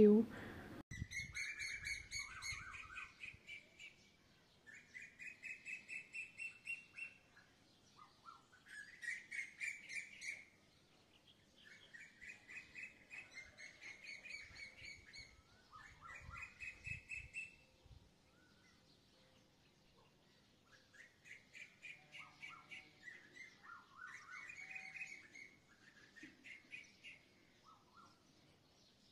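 A small songbird singing a series of rapid trilled phrases, each about two to three seconds long, with short pauses between them.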